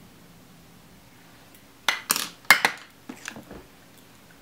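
Makeup brush and hard plastic cosmetics packaging being handled and set down: a run of clicks and clatters in the second half, loudest about two and a half seconds in.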